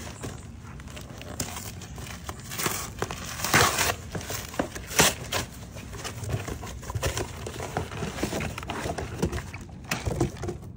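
A package being opened by hand: irregular crinkling, rustling and scraping of packaging, with louder rips about three and a half seconds in and again around five seconds.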